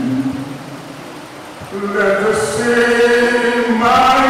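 A man singing slowly in long, held notes, a simple chant-like melody. The voice drops away briefly about half a second in and comes back with a sustained note near the two-second mark.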